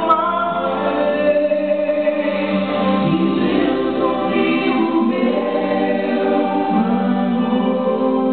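Gospel song sung by a vocal trio of two men and a woman through microphones, several voices together on long held notes. A brief click sounds right at the start.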